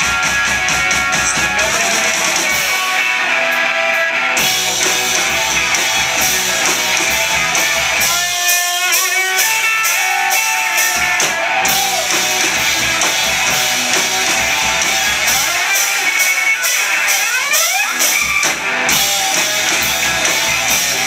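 Live rock band playing loud, with electric guitar and a drum kit; twice the bass drops away for a few seconds while the guitar plays sliding notes.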